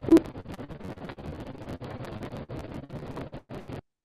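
Accelerometer recording from inside a honeybee colony: the bees' steady buzzing vibration, broken a moment in by one short, loud tonal pulse from an electromagnetic shaker, the artificial 0.1-second stimulus. The buzzing then carries on unchanged until it cuts off near the end, showing no measurable reaction from the bees to the stimulus in the busy summer season.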